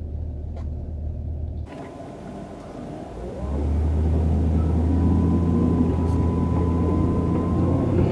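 Low engine and road rumble of a car driving, heard from inside the car, with a sudden change in the sound about two seconds in and a clear rise in level a little over three seconds in as it gets under way. A faint steady high whine runs under the rumble.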